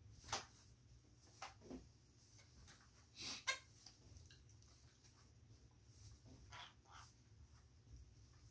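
Quiet room with a few short, soft clicks and rustles from an office chair being spun by hand, two small parrots gripping its fabric back. The loudest is a scratchy rustle about three seconds in.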